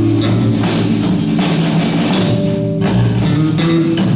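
Punk rock band playing live: electric guitars and bass guitar over a drum kit with steady cymbal hits, the cymbals breaking off briefly near three seconds in.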